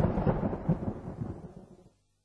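A low rumbling noise with crackle, fading away steadily and cutting off to silence near the end.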